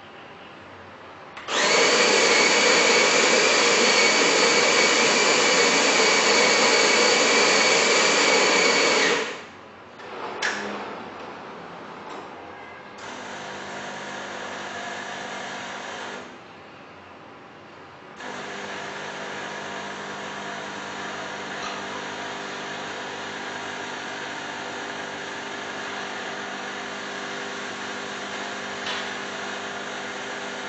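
Bean-to-cup coffee machine's conical burr grinder grinding beans for about eight seconds, then a click. The machine's pump then runs briefly, pauses for about two seconds (the pre-brew), and hums steadily as the coffee is pumped through into the cup.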